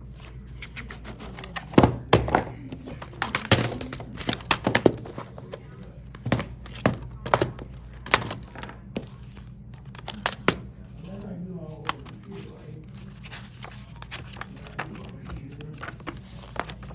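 Plastic DVD cases being handled, clicking and knocking as they are flipped, opened and set down on a table, with a steady low hum underneath.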